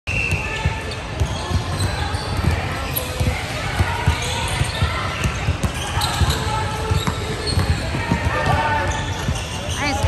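A basketball bouncing on a hardwood gym floor, with frequent short thuds throughout, under the chatter of voices echoing in a large gym.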